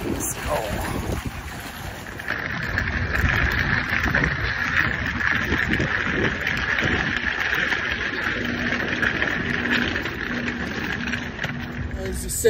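Wind buffeting a handheld phone microphone over steady city street noise outdoors, with irregular low rumbles. A steady hiss comes in about two seconds in and holds until near the end.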